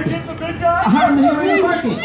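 Several people's voices talking and calling out over one another, with little or no music.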